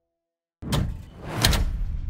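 Jukebox mechanism handling a 45 rpm single: a sudden sliding mechanical clunk about half a second in, a second, louder one just before halfway, then a rumbling run with a few small clicks.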